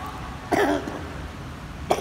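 Two short, cough-like vocal sounds from a man, the first about half a second in and a sharper one near the end, over a steady low hum of the pool hall.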